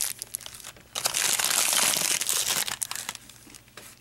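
Thin plastic wrapping crinkling as a small vinyl figure is unwrapped from its bag: a brief rustle at the start, then a longer stretch of crinkling from about a second in until near three seconds.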